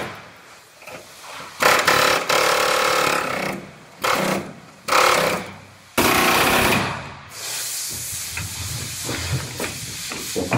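Pneumatic air tools cutting into the sheet-metal seams of a pickup bed: four loud bursts that start and stop sharply, the longest nearly two seconds. Then a quieter stretch with light clicks.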